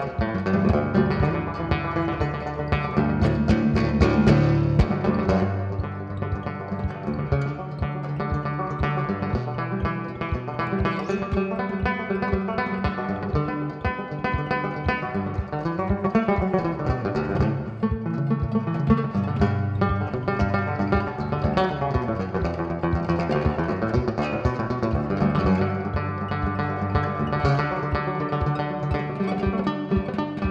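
Banjo played live, a steady run of quickly picked notes in an instrumental break with no singing.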